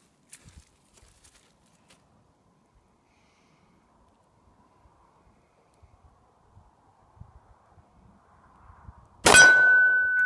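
A single .45 ACP pistol shot from a 1911-style handgun about nine seconds in, after near-quiet aiming, followed at once by a steel target plate ringing with one steady high tone that keeps sounding.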